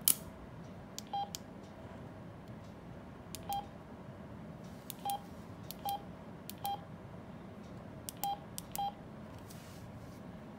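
Alinco DJ-MD5 handheld DMR radio giving a short beep at each keypad press, about seven beeps at uneven intervals as a frequency is keyed in, each with a faint button click. A sharp click right at the start is the loudest sound.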